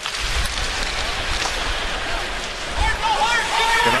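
Arena sound from live ice hockey play: a steady hiss of crowd noise over a low rumble. A raised voice calls out near the end.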